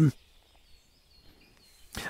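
A pause in a man's reading aloud, near silent apart from a faint, thin, wavering high bird call lasting about a second and a half; the voice stops just after the start and comes back at the very end.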